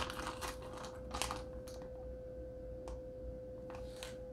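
Plastic fish shipping bag crinkling as it is handled and held open, with a few light crackles in the first couple of seconds and sparse ticks later, over a faint steady hum.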